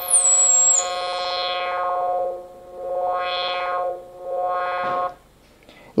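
Homemade Arduino 8-bit synthesizer holding a square-wave note while its low-pass filter cutoff is swept, so the tone turns duller, brighter and duller again in slow sweeps before the note stops about five seconds in. In the first second a thin high-pitched whine glides down and holds briefly: a stray tone the builder puts down to an imperfect, salvaged resonance potentiometer.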